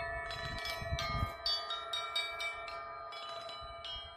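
Tuned chimes of an outdoor sound installation struck by hand: a quick run of strikes, several a second, whose clear ringing notes overlap and slowly fade.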